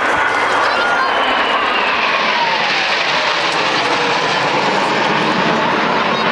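A formation of Kawasaki T-4 twin-engine jet trainers flying over, a loud steady jet roar with whining tones that fall in pitch as the jets pass.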